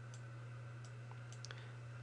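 A few faint clicks from the computer drawing input as a line is drawn on screen, over a steady low electrical hum.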